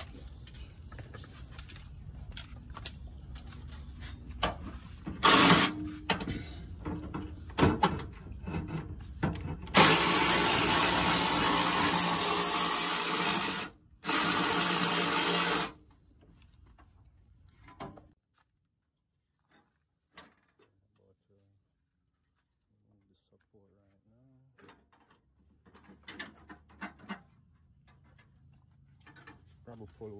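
A handheld power tool run in two steady bursts about ten seconds in, the first about four seconds long and the second under two, as bolts are worked loose on the van's front support. Before the bursts come scattered clicks and knocks of hand work.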